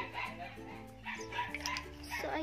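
Background music with steady low notes, and a dog barking about five times in short barks roughly two a second.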